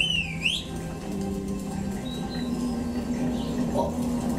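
Soundtrack of a projection-mapped dinner show: soft sustained music with a high, gliding cartoon-like squeak at the start and a few faint high chirps a couple of seconds in.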